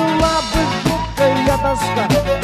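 Instrumental passage of a 1983 Soviet pop-rock band recording: a lead melody line with bending notes over drums and bass, with a steady beat.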